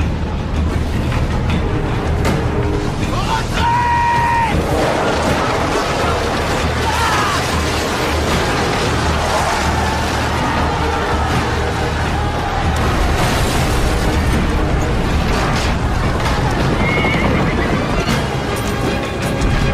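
Film battle soundtrack: music over explosions and battle noise, with a horse whinnying about four seconds in.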